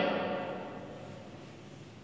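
Quiet room tone with a faint low steady hum, as the last of a woman's voice dies away at the start.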